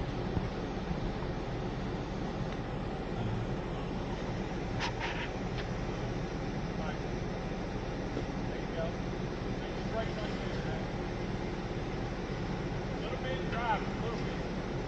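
Jeep Wrangler engine running steadily at low revs while crawling over rocks, with a few short knocks about five seconds in.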